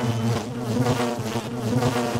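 Housefly buzzing sound effect, a continuous droning buzz that wavers in loudness as the fly moves.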